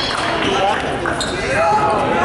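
A basketball dribbled on a gym court during live play, amid the voices of spectators and players.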